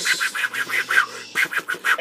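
A man laughing in quick breathy bursts, about six a second, with a short break a little past the middle.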